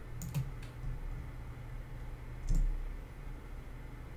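A few light clicks from a computer mouse and keyboard, three close together near the start and a louder one with a low thump about two and a half seconds in, over a low steady hum.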